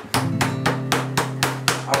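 Kitchen knife beating a chicken breast through plastic wrap on a countertop, an even run of blows about four a second, tenderizing and thinning the meat.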